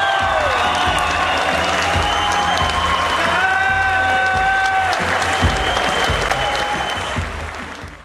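Audience applauding over music with long held notes and a steady low beat, fading out near the end.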